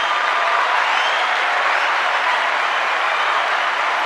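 Recorded crowd applause played in over the show: steady, even clapping without speech.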